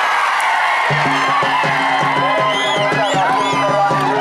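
A drum starts up about a second in, beaten in a steady fast rhythm as the bout ends, over loud crowd voices and shouts.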